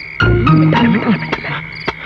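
Film background score: a short phrase repeating about every two seconds, with low bass notes, a few melodic notes and sharp percussive knocks, over a steady high chirring like crickets.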